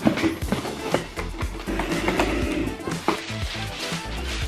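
Background music, with short knocks and rustles of a cardboard box and tissue paper being handled.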